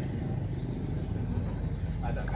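Small wooden boat's motor running steadily, a low even drone with a fast pulse.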